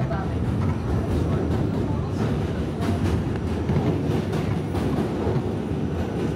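New York City subway train running across the Manhattan Bridge: a steady rumble with irregular clacks of the wheels over the rail joints.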